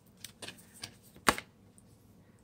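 Cards of a Moonology oracle deck being handled as one card is drawn: a few light, irregular clicks and taps, the sharpest about a second and a quarter in.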